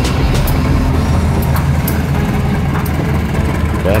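CC201-class diesel-electric locomotive passing close by with its coaches, the diesel engine running with a steady low drone, over scattered sharp clicks from the running gear on the rails.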